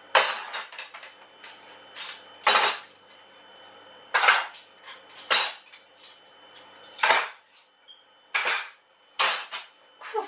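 Metal cutlery and kitchen utensils clattering as they are dried and put away, in about seven separate clinks and clatters a second or so apart.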